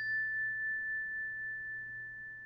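A single high chime tone, struck just before, rings on steadily and slowly fades: the sound sting of a production logo.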